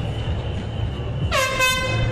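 A single horn blast about one and a half seconds in, dipping briefly in pitch at its start and then held steady: a hand-held air horn of the kind sounded at street protests.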